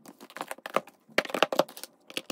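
Eyeshadow palettes being set one after another into a clear acrylic drawer: a quick, irregular run of light knocks and clacks as they hit and slide against the acrylic.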